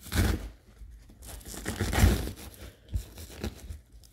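Paper and nylon pouch fabric rustling and scraping as a hook-and-loop retention adapter is slid down behind a Kydex insert over guide slips of paper. It comes in a few short scrapes, the loudest about two seconds in, with small ticks near the end.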